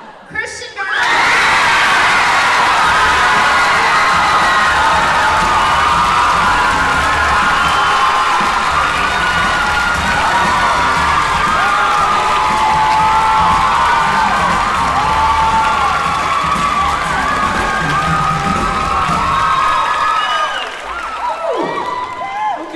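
A large, mostly teenage audience in a theatre cheering loudly, with many high voices shouting over clapping. It breaks out about a second in and dies down near the end.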